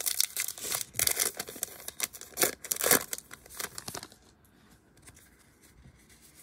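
A 2020 Topps Allen & Ginter trading-card pack wrapper being torn open and crinkled by hand, in a quick series of rips that die away about four seconds in.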